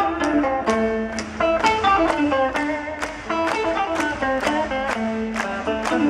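Live band playing an instrumental passage: a guitar plucking a run of quick single notes over regular drum hits.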